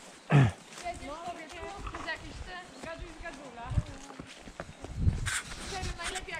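A horse walking on a soft forest track, its hoofbeats low dull thuds, under faint indistinct talking. A short, loud sound falling sharply in pitch comes about half a second in.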